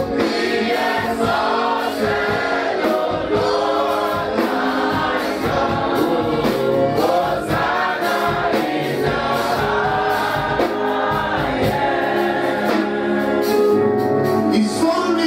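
A congregation singing a gospel worship song together, many voices at once over steady instrumental accompaniment.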